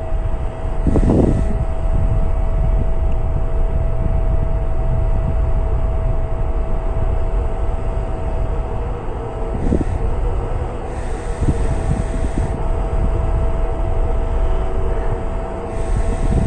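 Wind buffeting the microphone in a steady low rumble, with the ground control station's cooling fan giving a constant thin whine underneath.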